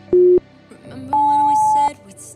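Workout interval timer counting down: a short low beep, then about a second later a longer, higher beep that marks the start of the next work interval. Background music plays underneath.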